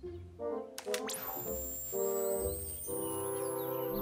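Cartoon background music with sustained horn-like chords. About a second in, a few clicks lead into a high electronic whine that rises slowly in pitch: a robot's scanning sound effect.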